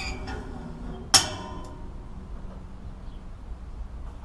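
A single sharp metallic clank with a brief ringing tail about a second in, from the crank handle of a hand-crank rotary drum pump being worked and let go, with a few light ticks just before.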